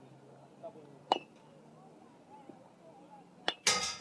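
A metal baseball bat striking a tossed ball near the end, a sharp metallic ping with a brief ring. A single sharp click comes about a second in.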